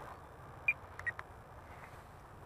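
A few short, high clicks and blips against a quiet outdoor background: one sharper click and beep about two-thirds of a second in, then several fainter ones around a second in, as a Spektrum DX8 radio transmitter is handled.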